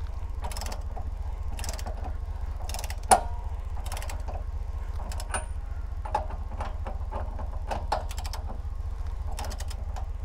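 Socket ratchet wrench clicking in short strokes as the nut on an Andersen No Sway hitch's chain tensioning bolt is tightened, with a sharper click about three seconds in.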